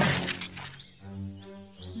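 A loud cartoon crash sound effect at the very start, dying away within the first second, followed by a held chord of background music.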